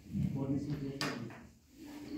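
A few indistinct spoken words, with a single sharp click about a second in.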